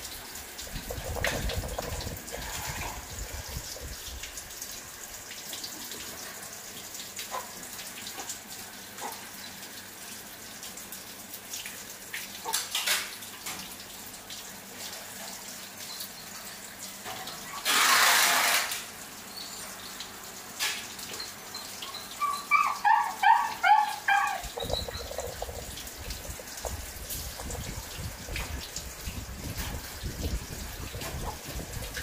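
Water running steadily, with a loud one-second rush of noise about eighteen seconds in. About three-quarters of the way through, a quick run of about eight short, high squeaks from a young pig-tailed macaque.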